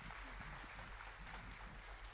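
Quiet room tone: a faint hiss over a steady low electrical hum.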